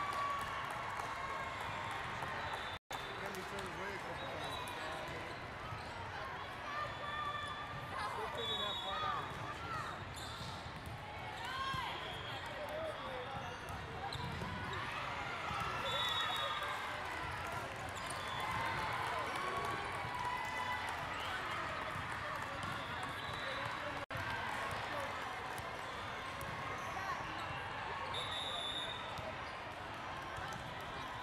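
The din of a large volleyball tournament hall: many overlapping voices and shouts, volleyballs being struck and bouncing on the courts, and several short referee whistle blasts. The sound cuts out for an instant twice.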